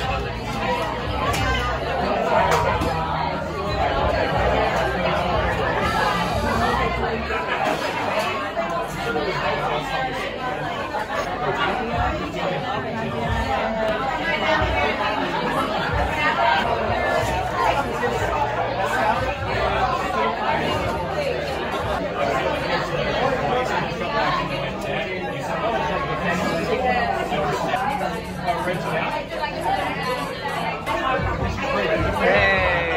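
Busy bar chatter: many voices talking at once, none of them clear, with background music playing underneath.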